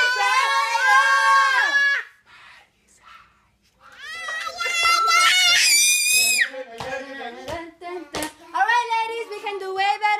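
A toddler and adults shouting long, drawn-out calls in turn, call and response. The second call, about four seconds in, climbs to a high scream.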